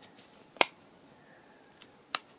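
A single sharp tick of a fingernail picking at the backing of double-sided tape on a paper cut-out, with a fainter tick near the end.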